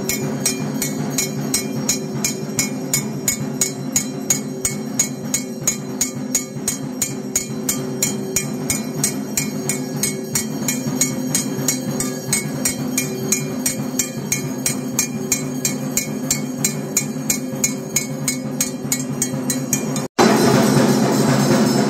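Rapid, evenly spaced metallic strikes, several a second, over a steady low drone: percussion accompanying a Hindu temple ritual.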